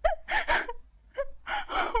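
A woman sobbing into her hands, in about three gasping, breathy sobs.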